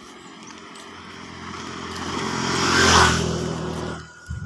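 A motor vehicle's engine coming closer and growing louder, loudest about three seconds in, then cutting off suddenly.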